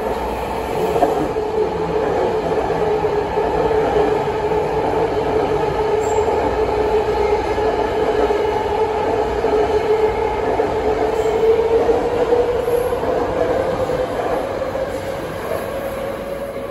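A 1972-era BART legacy train passing at speed without stopping: a steady rush of wheels on rail with a strong, steady whine just under 500 Hz that rises slightly in pitch and eases off near the end as the train pulls away.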